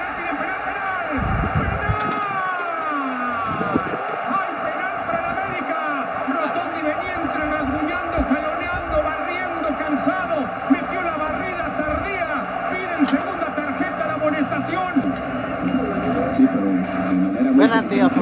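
Televised football match audio playing: overlapping voices over a steady stadium crowd noise.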